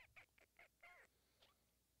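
Near silence, with a few faint short pitched sounds in the first second and a half.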